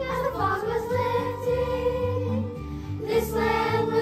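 Children's choir singing together, holding long notes.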